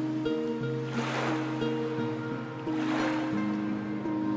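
Soft background music of sustained, held notes over small sea waves washing onto a rocky shore, with two swells of surf about two seconds apart.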